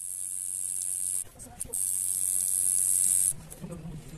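Tattoo machine running as the needle lines a stencil outline on skin: a steady high hiss over a low hum. It cuts out briefly just past a second in, and again near the end.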